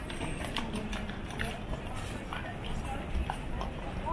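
Busy airport check-in hall ambience: a steady low rumble under the indistinct chatter of the crowd, with irregular clacks of footsteps and rolling suitcases on the hard floor.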